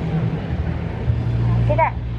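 A steady low hum that grows stronger about halfway through, with a short rising vocal sound just before the end.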